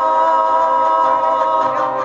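Male vocal duo holding one long sung note in harmony during a chilena.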